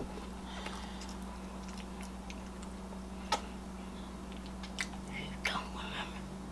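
Quiet chewing and mouth sounds while eating pancakes, with a few small sharp clicks, the sharpest about three seconds in, over a steady low hum.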